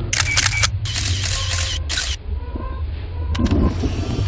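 Camera shutter clicking in quick bursts over a low, steady rumble.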